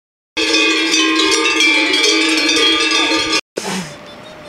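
Metal livestock bells clanging continuously, as on goats grazing on an alpine pasture, starting sharply just after a moment of silence. They cut off abruptly near the end, and a brief, quieter, different sound follows.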